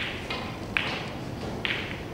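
A snooker cue strikes the cue ball, then a few sharp clicks of snooker balls follow over the next two seconds, the sharpest a little under a second in.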